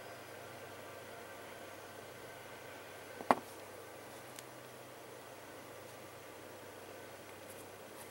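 Quiet room hum with one sharp click about three seconds in, from a dried paper-clay piece being worked free of a flexible silicone mold, followed a second later by a much fainter tick.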